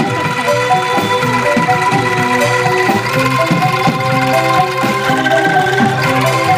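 Angklung ensemble playing an instrumental passage: shaken bamboo angklung holding trembling chords over quick bamboo-xylophone notes, with bass and drum kit keeping a steady beat.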